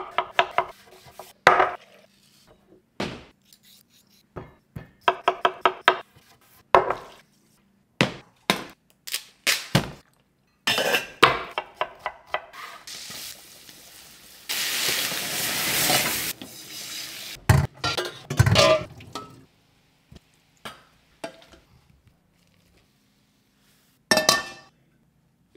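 Kitchen prep sounds: a chef's knife cutting and chopping on a wooden board, with metal utensils and pans clinking, and a few seconds of frying-pan sizzling about halfway through.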